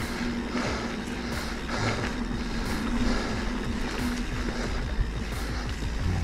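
Norco Fluid FS A2 full-suspension mountain bike rolling along a dirt forest trail: tyre noise and wind buffeting the camera microphone, with many small rattles and knocks from the bike over the ground and a steady low hum underneath.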